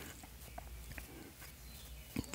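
Quiet room tone between spoken phrases: a faint steady low hum with a few soft, short ticks.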